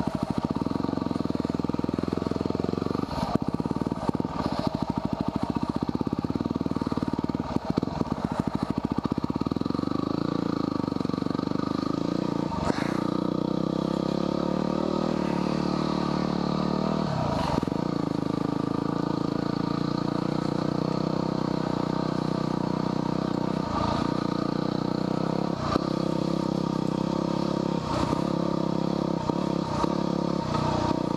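Yamaha WR250R dual-sport motorcycle's single-cylinder four-stroke engine running steadily as the bike rolls along a dirt track, with a few short knocks and clatters spread through.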